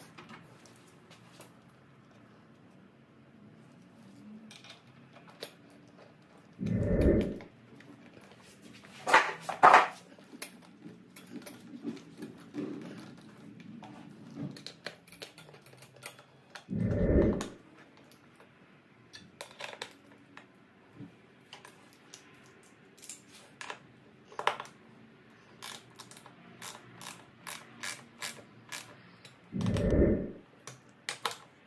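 A dog barking with a deep woof three times, roughly ten seconds apart. Between the barks come light clicks and taps of small hardware being fitted to a motorcycle sissy bar and backrest, growing frequent in the last seconds.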